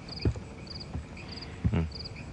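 Cricket chirping steadily, short high trilled chirps repeating a little under twice a second, with a brief man's 'hmm' near the end.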